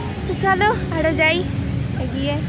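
A woman's voice, a brief spoken word, over a steady low background rumble.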